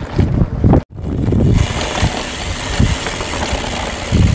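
Wind buffeting an outdoor microphone: irregular low rumbling gusts, a sudden cut to silence just under a second in, then a steady hiss of wind noise with more low rumbles.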